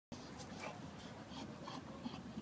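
Faint dogs barking in the background of a shelter's kennels: short, scattered barks at a low level.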